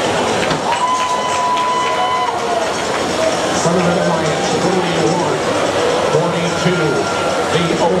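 Loud, steady din of a robotics competition arena: crowd voices and machine noise mixed together. A steady high tone sounds for about a second and a half near the start, and a fainter one near the end.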